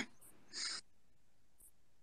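Near silence in the call audio, broken by one short, soft hiss about half a second in.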